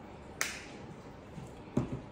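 A sharp click about half a second in, as the flip-top cap of a plastic honey squeeze bottle is snapped shut, then a dull thud near the end as the bottle is set down on the table.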